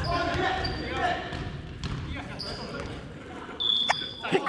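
Volleyball practice in a large gym: voices echoing around the hall, with scattered ball impacts and one sharp smack near the end.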